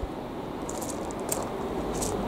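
Faint footsteps crunching on gravel, a few short crunches through the middle, over a low steady hiss.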